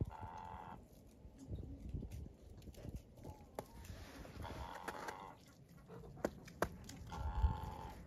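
Hens calling: three drawn-out calls, each under a second, one at the start, one about halfway through and one near the end, with a few sharp taps between them.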